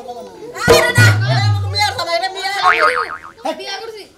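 Comic sound effects laid over voices: a sudden hit a little under a second in, then a low held tone for about a second, and a warbling, wavering whistle near the three-second mark.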